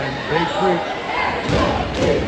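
Indistinct voices echoing in a gymnasium, with a basketball bouncing on the court and a heavy thud about one and a half seconds in.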